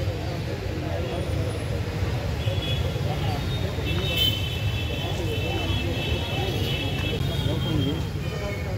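Outdoor street ambience: indistinct voices talking over a steady low traffic rumble, with high thin tones sounding through the second half.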